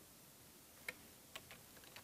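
Two faint computer keyboard key clicks, about half a second apart, against near silence.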